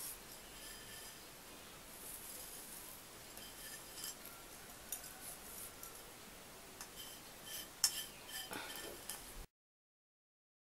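Faint, scattered light clicks and taps of fingers and nails against a plate, with soft rubbing of flour being patted onto skin; the sharpest click comes about eight seconds in. The sound cuts off suddenly shortly before the end.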